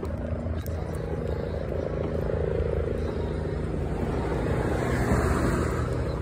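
Steady rumble of wind buffeting the microphone, with a low hum underneath, during a ride along a city sidewalk.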